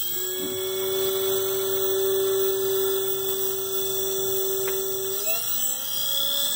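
Ford alternator run as a three-phase motor from a brushless speed controller, spinning with a steady electric whine and high-pitched controller tones. About five seconds in the whine rises in pitch as the throttle is opened toward about half throttle.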